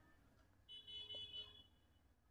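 A faint, high-pitched beep sounds once for just under a second, starting about two-thirds of a second in, against near silence.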